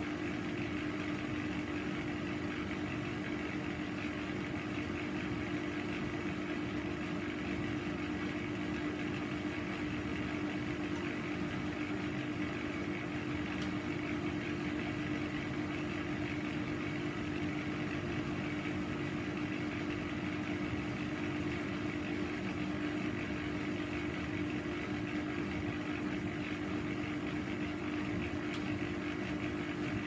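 Bendix 7148 washing machine running with a steady motor hum, one constant tone over an even mechanical noise, without a break or change in speed.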